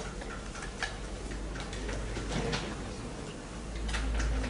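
Light, irregular taps and clicks, a few per second, of writing on a board, over a steady low hum.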